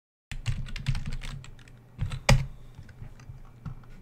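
Typing on a computer keyboard: a quick run of keystrokes, then one loud click a little past two seconds in, and a few lighter taps near the end.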